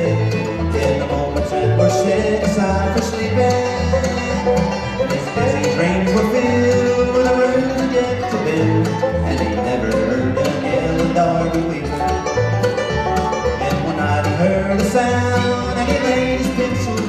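Bluegrass band playing live on fiddle, mandolin, upright bass, acoustic guitar and banjo, with a steady low pulse from the bass under the melody.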